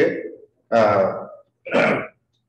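Speech only: a man talking in three short phrases with brief pauses between them.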